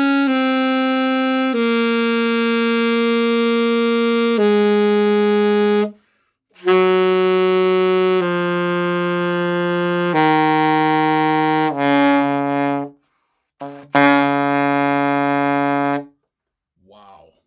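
A cheap Glory alto saxophone playing a slow descending B-flat scale (concert D-flat), each note held for one to three seconds, stepping down an octave to the low B-flat. The low B-flat at the bottom plays almost 40 cents sharp.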